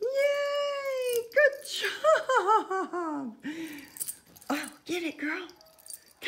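A person giggling and squealing with high-pitched laughter: a drawn-out squeal of about a second, then a run of quick falling giggles and a few shorter bursts.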